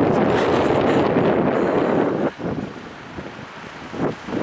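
Wind buffeting the camera's microphone in a loud, unpitched rush that drops off sharply a little over two seconds in.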